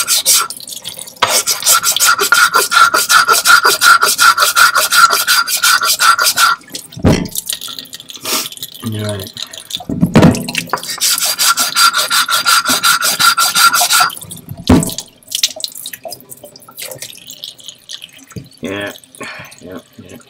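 The edge of a hard Japanese natural whetstone (Nakayama) is rubbed rapidly back and forth on a wet diamond plate to chamfer it, giving a fast gritty rasp of several strokes a second. It comes in two long runs with a pause and a few knocks between them, and tapers off to a few faint knocks near the end.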